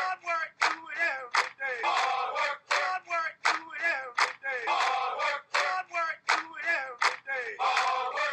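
Shouting voices in a quick repeating pattern, with sharp cracks about every half second between the calls.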